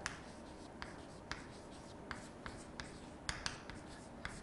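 Chalk writing on a chalkboard: faint scratching with a string of short, sharp taps as the chalk strikes the board for each letter.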